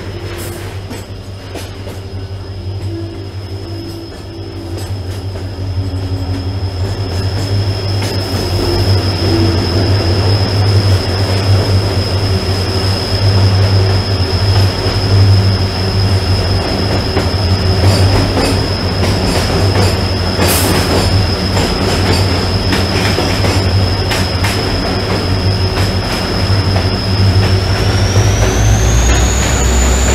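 Train wheels squealing in one long, steady high note over a deep rolling rumble. This is flange squeal, the sign of the wheels grinding round a tight curve of the mountain line. The rumble grows louder about five seconds in as the train runs into a tunnel, and the squeal rises in pitch near the end.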